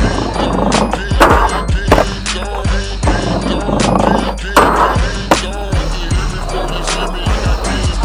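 A skateboard sliding along a wooden ledge, with wheel rumble and a few sharp board knocks, under music with a steady beat.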